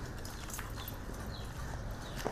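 Footsteps of a few people walking over paved concrete: irregular short taps and scuffs of shoes and sandals.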